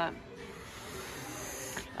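A steady breathy hiss lasting about a second and a half, cutting off just before speech resumes.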